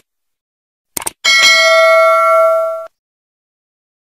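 Subscribe-button sound effect: quick mouse clicks about a second in, then a notification-bell ding that rings for about a second and a half and cuts off abruptly.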